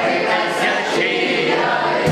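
Several voices singing a Ukrainian folk song together, choir-like, with no drum beat under them.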